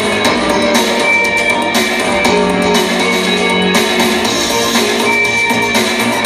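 A synthpop band playing live: synthesizers over a steady beat, in an instrumental passage without vocals.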